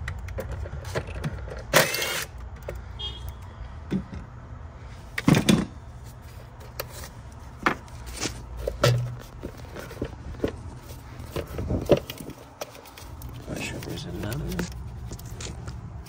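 Short whirring bursts of a cordless ratchet backing out a 10 mm bolt, about two seconds in and again around five seconds in. Between them come scattered metallic clinks and rattles of tools and parts.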